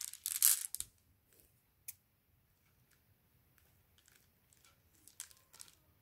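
Rustling and crinkling from a mesh bag of glass marbles being handled during the first second, then quiet with a few faint clicks near the end as scissors are brought to the net.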